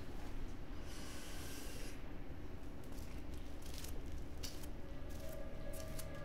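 A woman breathing heavily and unsteadily, with a soft exhale about a second in, over a low steady room hum. A sustained music tone comes in near the end.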